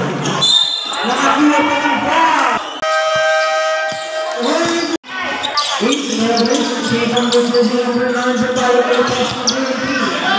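Basketball being played: the ball bouncing on the court amid players' voices. A steady held tone sounds for about two seconds, starting about three seconds in.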